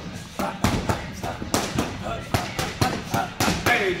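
Boxing gloves smacking into focus mitts in a rapid run of sharp strikes, several a second, as punch combinations land on the pads.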